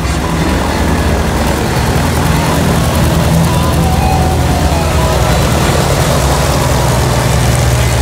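Motorboat engine running at speed in a steady low drone, with water spraying from its wake.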